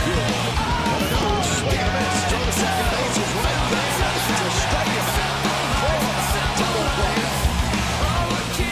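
Hard rock music with electric guitar, drums and a singing voice, playing steadily.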